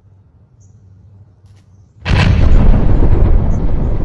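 Explosion sound effect dubbed in for a thrown toy grenade: it bursts in suddenly about two seconds in, loud and deep, and lasts over two seconds.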